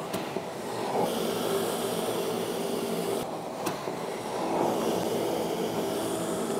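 Two-horsepower inflatable blower running steadily: a constant motor hum with rushing air and a few steady tones, with one short tick a little past halfway.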